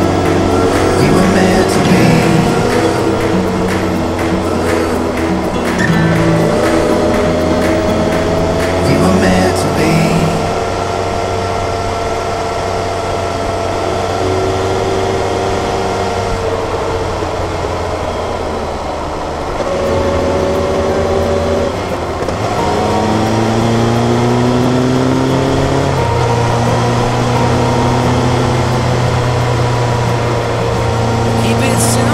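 Background pop music with a beat over the Kawasaki Versys 1000's inline-four engine running on the road. About a third of the way in the music thins out, and the engine note is left rising and falling with the throttle, climbing steadily near the end.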